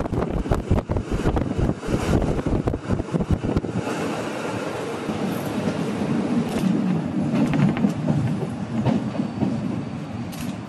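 Rhaetian Railway Bernina line train running along the track, heard from inside the carriage: wheels clicking and knocking over the rails with a running rumble. For about the first four seconds the sound is gusty and full of clicks, then it settles to a steadier rumble with an occasional knock.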